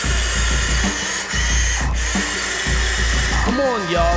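Electric motor and gear whine of a Huina radio-controlled toy excavator driving its tracks across sand, over background music with a pulsing bass. A voice comes in near the end.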